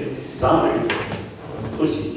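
Indistinct speech from people in a meeting hall, with voices starting and stopping, including a sharp start about half a second in.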